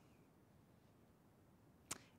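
Near silence: faint room tone, with one brief click near the end.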